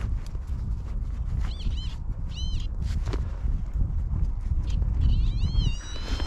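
Metal detector target tones: short electronic chirps that rise and fall in pitch, a few about two seconds in and a wavering run near the end, as the target signal is re-checked in the hole. Under them are a steady low rumble and a couple of soft knocks of a digging knife in soil.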